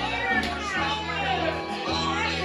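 Live gospel music with an electric bass holding steady low notes under a mix of voices, singing and calling out.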